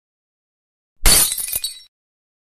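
Glass-shattering sound effect: a sudden crash about a second in, followed by short ringing clinks of shards that die away in under a second.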